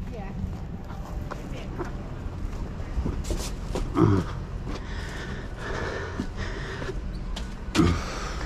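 Pickup truck engine idling steadily, a low even hum, with a brief voice about halfway through.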